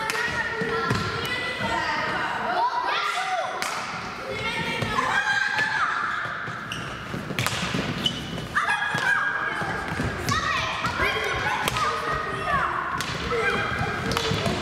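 Children shouting and calling to each other in a large, echoing sports hall, with scattered sharp clacks of plastic hockey sticks hitting the ball and the floor.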